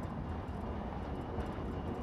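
Steady low road and engine rumble heard from inside a moving car's cabin.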